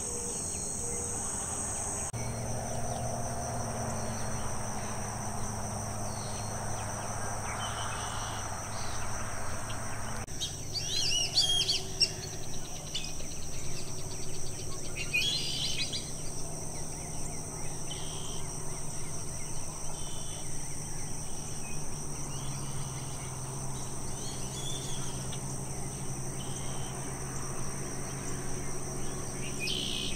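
Steady high-pitched insect chorus in a marsh at dusk, with scattered bird calls, the loudest about eleven and fifteen seconds in, over a low steady hum.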